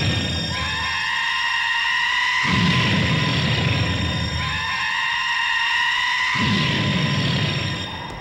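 Dramatic film background score: held high notes over a heavy low pulse that comes in and drops out in waves, each lasting about two seconds.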